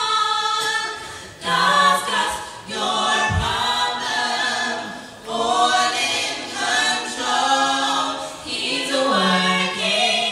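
Four women singing together a cappella, in sung phrases broken by short pauses for breath.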